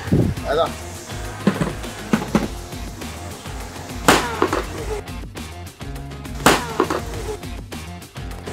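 Hammer blows on a budget ISI-certified O2 motorcycle helmet's shell lying on pavement: two sharp hits, about four seconds in and again about two and a half seconds later, over background music.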